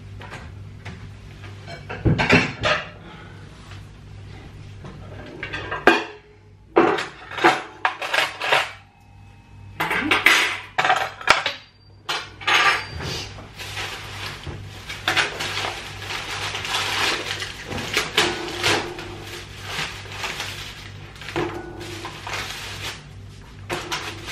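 Metal spoons and forks and plates being set down on a table: a string of sharp clinks and clatters against the tabletop and each other, with a plastic takeaway bag rustling as it is unpacked.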